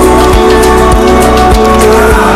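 Background music: a song with a steady drum beat, a little under two beats a second.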